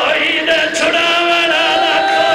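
A man chanting a mournful recitation into a microphone, drawing out long wavering notes and ending on a held, steady note.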